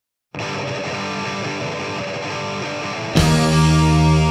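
The gap between two punk rock album tracks: a moment of silence, then a distorted electric guitar starts the next song about a third of a second in. Shortly after three seconds the rest of the band comes in, much louder.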